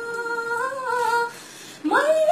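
A woman singing a Nepali song unaccompanied, holding one long note with a small waver in pitch. The note breaks off past the middle, and after a short breath the next phrase starts on a higher note near the end.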